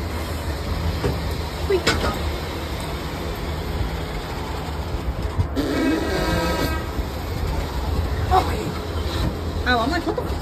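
A steady low rumble, with a horn sounding once for about a second midway through. A few brief snatches of voice are heard.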